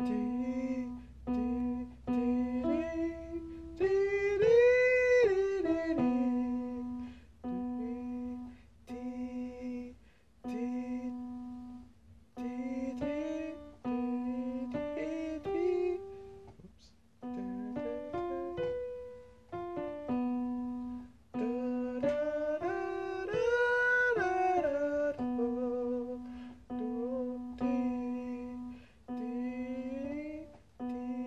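A beginner singer's voice vocalising scale exercises along with notes on an electronic keyboard: runs of short repeated notes on one pitch, then a phrase that climbs to a higher held note and back down. The climbing phrase comes twice, a few seconds in and again past the middle.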